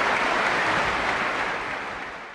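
Audience applauding, the clapping starting to fade near the end.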